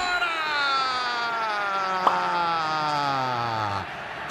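A football TV commentator holding one long drawn-out shout for nearly four seconds, its pitch slowly falling, over stadium crowd noise, with a single sharp knock about two seconds in.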